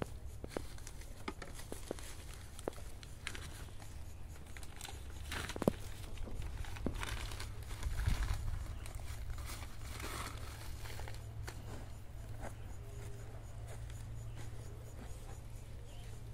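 A thin plastic nursery bag crinkles and tears as it is pulled off a seedling's root ball, with scattered crackles and clicks of handling.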